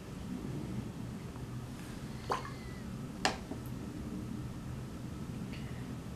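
Low, steady room hum with two sharp clicks about a second apart, a little before and after the middle.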